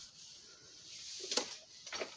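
Soft rustling and handling of household clutter, then a sharp knock about two-thirds of the way in and a lighter one near the end, as objects are bumped.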